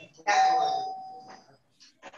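A single bell-like chime that starts sharply and rings on a steady pitch, fading away over about a second.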